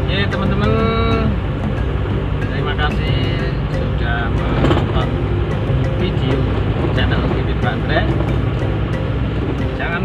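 Car cabin noise while driving: a steady low rumble of engine and road. A voice is heard in short snatches over it, with background music.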